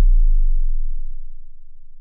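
The final deep synth sub-bass note of an electronic house track dying away: a low hum that falls slightly in pitch as it fades.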